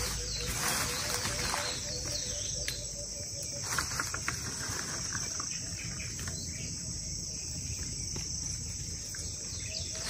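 Steady high-pitched buzzing of insects, like crickets, in the forest. A low, evenly pulsing note sounds under it for the first three and a half seconds. A few light clicks and rustles come and go.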